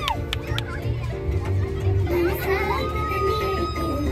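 Dance music with a heavy bass beat playing in a crowded bus, with girls shouting and calling over it. A few sharp clicks come right at the start, and one long high call is held from near the end of the third second onward.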